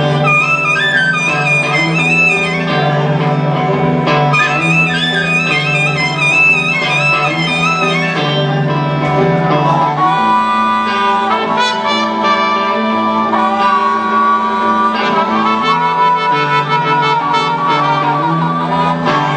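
A blues band playing live in an instrumental passage with no singing. A lead instrument plays quick, wavering phrases over a steady bass line, then holds long notes from about ten seconds in.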